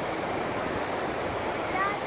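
Ocean surf breaking and washing up the beach: a steady rushing noise.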